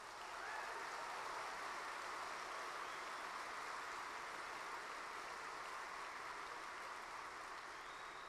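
A large audience applauding: dense, steady clapping that swells up quickly at the start and eases off slightly near the end.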